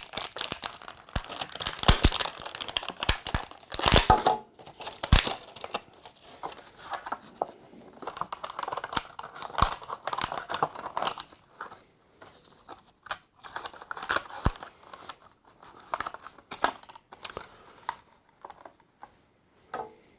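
Thin clear plastic blister packaging crinkling and crackling in the hands as an action figure is worked out of it, with many sharp snaps. The crackles come thick in the first half and grow sparser and fainter toward the end.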